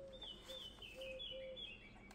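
Faint bird chirping in the background: a string of short, high, slightly falling chirps that stops just before the end.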